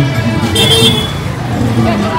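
Crowded street noise: many voices talking over loud music and traffic, with a short high-pitched toot about half a second in.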